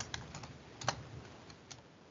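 Typing on a computer keyboard: a quick, uneven run of faint key clicks, most of them in the first second, thinning out near the end.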